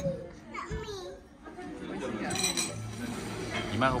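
Indistinct talk and children's voices at a table, quieter for a moment after the first second, then a voice calling a child's name near the end.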